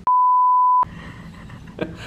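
A censor bleep: one steady, high-pitched electronic beep lasting under a second, with all other sound muted beneath it. After the bleep there is only faint room tone.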